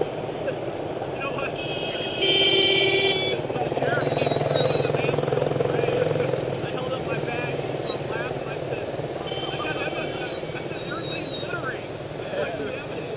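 A motorcycle engine runs steadily at low parade speed, a little louder for a few seconds early on, with spectators' voices around it. A brief high-pitched tone sounds about two seconds in, and a fainter one near ten seconds.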